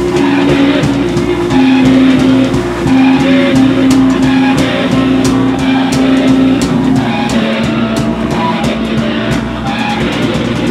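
Live noise music: a loud, wavering sustained drone that drops in pitch in steps, over a drum kit with frequent cymbal and drum hits.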